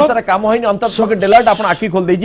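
Only speech: a man talking fast without a pause, with strong hissing 's' sounds about a second in.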